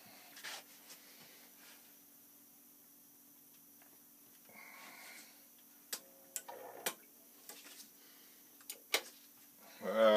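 Quiet workshop room with a faint steady low hum, broken by scattered light clicks and knocks as gloved hands handle equipment and a plastic spray bottle. A brief vocal sound comes right at the end.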